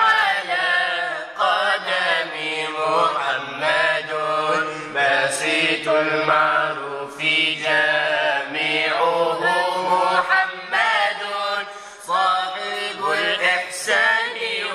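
An Arabic devotional nasheed sung in long, ornamented melodic phrases over a steady low hum.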